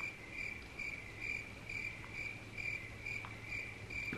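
Cricket chirping, an even train of short chirps about two and a half times a second, laid in as a comic "awkward silence" sound effect over a faint low hum.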